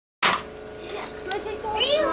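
Voices talking, a child's among them, over a steady hum, starting with a sharp click as the sound cuts in.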